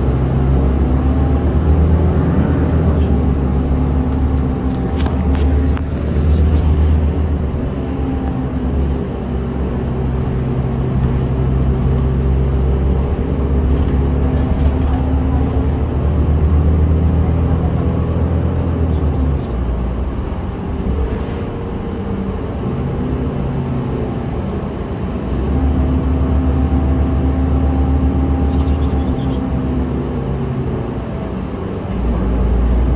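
City bus engine and drivetrain running as the bus drives, heard from inside the passenger cabin. The low drone eases off for several seconds about two-thirds of the way through, then picks up again.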